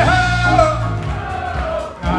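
Live soul band playing: a voice holds one long sung note that falls away after about half a second, over bass guitar and drums.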